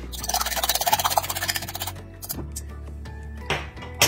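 Raw eggs being beaten with a fork in a glass bowl: quick, rapid strokes clinking against the glass for about two seconds, then stopping, with a couple of single taps afterwards. Background music plays throughout.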